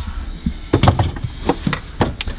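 Irregular knocks and clunks of tools and metal being handled, several short hits spread through the two seconds.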